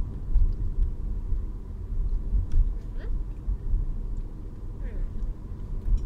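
Low, continuous rumble of a car heard from inside its cabin.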